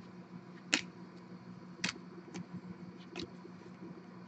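Panini Prizm football trading cards being gathered up and handled, giving a few sharp clicks and taps, the loudest about three-quarters of a second in and again near two seconds in, over a faint steady hum.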